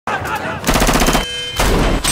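Rapid automatic rifle fire in two bursts, the second starting about a second and a half in, as heard in a film's battle sound mix.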